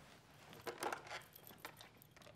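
Soft plastic clatter and clicks of a push-button desk telephone being handled: a short burst of rattling about a second in, then a few single clicks near the end.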